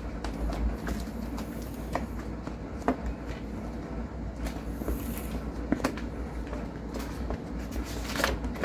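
Continental Mountain King 29-inch wire-bead mountain bike tyre being worked onto its rim by hand: rubber scuffing and creaking against the rim, with a few short clicks and snaps as the bead is pushed in. A low steady rumble runs underneath.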